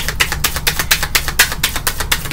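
Tarot cards being shuffled by hand: a quick, fairly even run of crisp clicks, about eight to ten a second, over a steady low hum.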